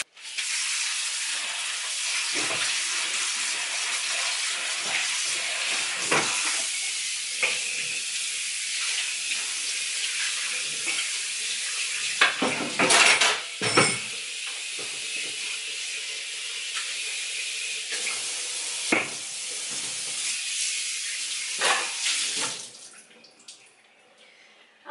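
Kitchen tap running steadily into the sink while a pan is washed, with occasional knocks and clatter of cookware against the sink. The water shuts off near the end.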